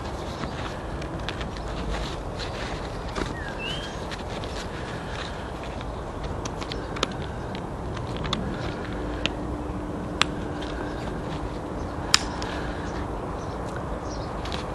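Plastic webbing connectors on a camouflage pouch yoke being handled and fastened, giving a few sharp clicks in the second half, over a steady outdoor background hiss.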